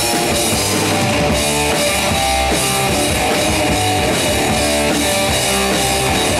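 Heavy rock band playing live and loud: electric guitar chords over a full drum kit, going on steadily.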